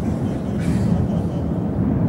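Strong wind blowing in a steady rush with a low rumble.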